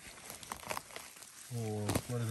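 Faint rustling and small crackles of fingers working through moss and grass around the base of a mushroom's stem. Near the end a man's voice holds a short low hum.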